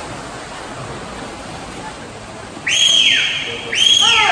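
Steady splashing and wash of swimmers in an indoor pool. Near the end come two loud shrill cheering whistles about a second apart, each rising sharply in pitch and then falling away.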